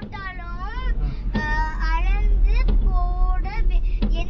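A young girl singing in a high voice with gliding, held notes, over the steady low rumble of the car cabin.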